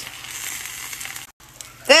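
Tortilla sizzling in an oil-sprayed frying pan: a steady soft hiss that cuts out for a moment about two-thirds of the way through.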